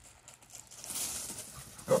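Dogs moving about on a gravel yard, their paws crunching on the loose stones. Near the end there is a short, loud call.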